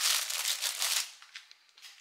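Thin clear plastic packaging crinkling and rustling as lavash flatbread is slid back into it. The rustle lasts about a second, then dies away.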